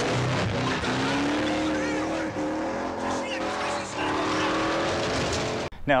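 Movie soundtrack of a car being driven hard across dirt: the engine revs with a wavering, gliding pitch over tyre skidding and noise from the dirt. It cuts off suddenly just before the end.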